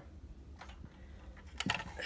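A few faint clicks and taps as a hand handles a 1/24-scale diecast stock car, the sharpest pair near the end, over a steady low hum.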